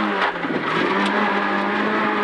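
Peugeot 106 N2 rally car's four-cylinder engine running under load, heard from inside the cockpit. Its note holds a steady pitch, with a short break just after the start.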